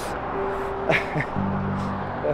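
Background music with held notes, with a couple of short gliding sounds about a second in.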